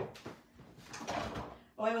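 Soft rustling and scraping of paper scraps and craft supplies being moved about on a work surface, with a woman starting to speak near the end.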